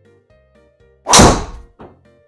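Golf driver striking a ball at full speed, one loud crack about a second in, on a swing measured at about 58 m/s head speed, then a softer knock just before the end.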